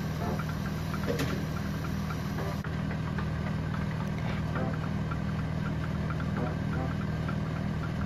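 A small motor running with a steady low hum, with a few faint ticks over it.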